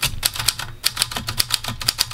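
Maritsa 11 ultra-portable manual typewriter being typed on: a quick, uneven run of typebar strikes, about eight keystrokes a second.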